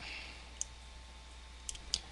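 Computer mouse clicking: a single faint click about half a second in, then two quick clicks close together near the end.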